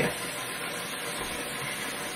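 A steady, even hiss of background noise with no distinct event.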